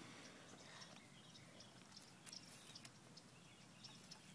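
Near silence: faint outdoor background with a few faint soft ticks about two to three seconds in.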